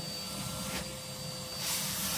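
Vacuum cleaner running steadily with a high whine while its hose is drawn over clothing to suck off soot and ash; the airflow turns into a louder hiss near the end.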